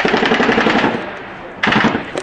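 Bursts of automatic machine-gun fire: a long rapid burst for about a second, then a shorter burst near the end.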